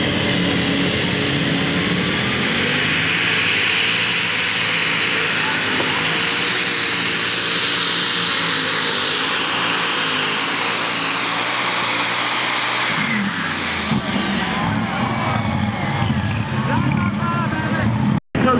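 Super Stock pulling tractor at full throttle dragging the weight transfer sled, its engine and turbochargers running with a high whine that climbs over the first few seconds and holds. About thirteen seconds in the whine drops away as the throttle comes off at the end of the pull.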